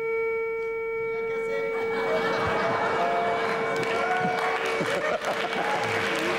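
A plush toy horse's sound unit gives one long, steady horn-like tone. Studio audience laughter builds under it from about two seconds in.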